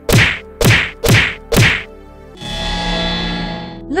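Cartoon punch sound effects: four sharp whacks about half a second apart, each sweeping down in pitch, as a cartoon bunny strikes at the laser bars of his cell. Then a steady humming tone for about a second and a half.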